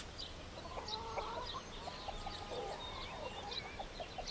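Hens clucking faintly in short pitched calls, with small birds chirping higher up.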